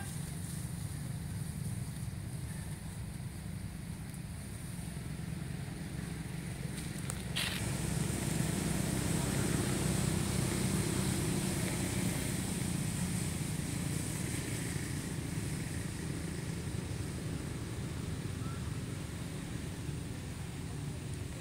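Low, steady rumble of motor traffic that grows louder for a few seconds from about eight seconds in, as a vehicle passes. There is a single sharp click a little after seven seconds, and a faint steady high hiss throughout.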